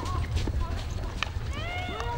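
Players' voices calling out across an outdoor field hockey pitch over a steady low rumble like wind on the microphone. There are a couple of faint clicks, and near the end one longer call rises and falls.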